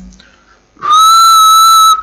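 A person whistling one steady high note into the microphone, starting a little under a second in and held for about a second, very loud.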